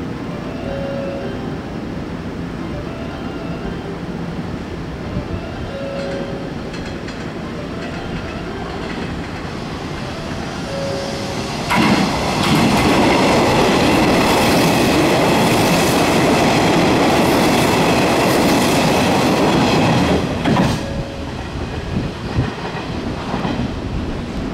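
Hanshin 8000-series electric train passing through a station at speed without stopping. A low steady rumble is heard as it approaches; about twelve seconds in comes a sudden loud rush of wheels and running gear with high steady tones over it, which lasts about eight seconds and drops off sharply as the train clears.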